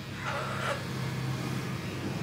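Electric hair clipper buzzing steadily as it trims armpit hair, with a brief breathy sound about half a second in.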